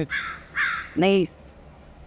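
A crow cawing twice in quick succession, two harsh calls about half a second apart.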